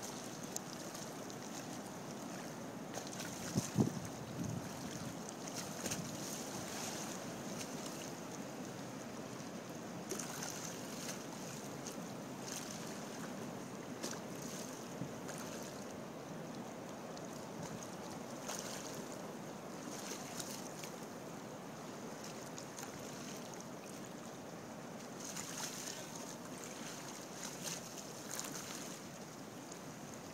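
Wind and small lake waves lapping against a floating wooden dock, a steady wash of noise with gusts on the microphone. A brief thump stands out about four seconds in.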